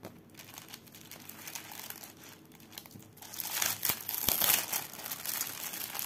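Clear plastic packaging sleeve crinkling as hands handle it and press it flat, soft at first and louder from about halfway through, with a few sharp crackles.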